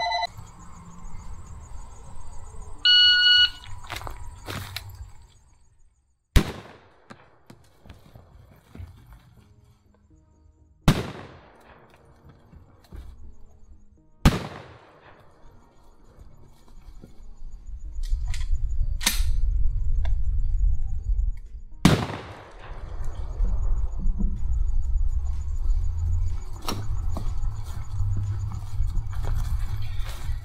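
A shot timer's electronic start beep, then four 12-gauge shotgun shots spaced several seconds apart, each ringing out after the blast, with a few fainter clicks between them. A low rumble runs through much of the second half.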